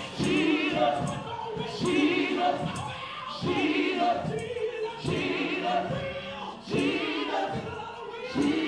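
Live gospel music: a choir and congregation singing short repeated phrases with vibrato over a band, with sharp beats about once a second.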